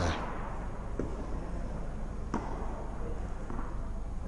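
A few faint, sharp knocks of tennis balls on an indoor court, about one, two and a half and three and a half seconds in, over a steady low hum of the hall.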